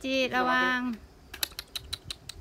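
A woman's voice calls out briefly, then a shrine suzu bell jingles: a quick, irregular run of bright metallic clicks as the bell rope is shaken.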